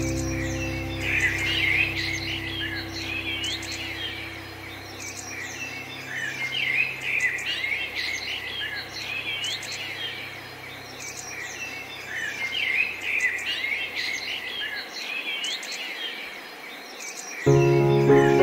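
Songbirds chirping and singing in a steady stream of short calls over a soft piano chord that rings on and fades out about fifteen seconds in. New piano notes come in just before the end.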